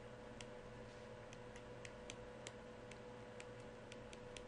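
Faint, irregular light ticks of a stylus tapping on a tablet while handwriting, about a dozen of them, over a faint steady hum.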